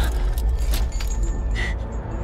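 Metal climbing gear clinking: a carabiner on a quickdraw handled and clipped at a bolt in rock, several sharp metallic clicks and a brief ring near the end, over a steady low rumble.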